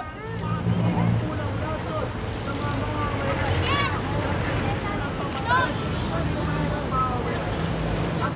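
Steady rumble of road traffic on a busy street, with scattered faint voices from a crowd of marchers.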